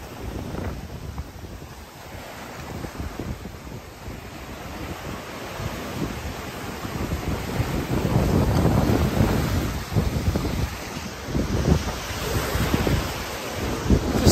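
Surf breaking and washing over rocks and sand, with wind buffeting the microphone. The waves swell loudest about eight to ten seconds in.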